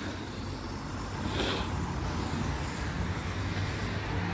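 Road traffic on a wet street: a steady low rumble with tyre hiss, and a brief louder hiss about a second and a half in.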